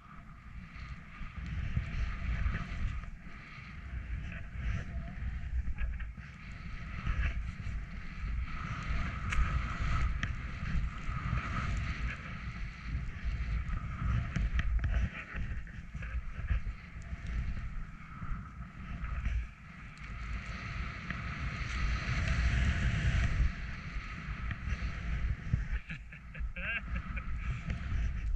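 Skis hissing through deep powder snow, with wind buffeting the microphone in a low rumble. The rushing noise rises and falls with the turns, loudest a little past two-thirds of the way through.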